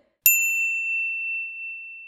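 A single bright bell-like ding struck about a quarter second in, its highest overtones fading within a second while the main tone keeps ringing and slowly dies away.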